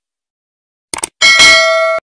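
Two quick clicks about a second in, then a loud bell ding, several steady ringing tones held for under a second and cut off abruptly: a subscribe-button click and notification-bell sound effect.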